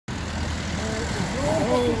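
Steady low rumble of vehicles on the road, with people talking indistinctly from about a second in.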